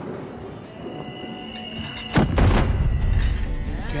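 A sudden heavy thud about two seconds in, a person collapsing to the floor, over a tense background score of sustained tones.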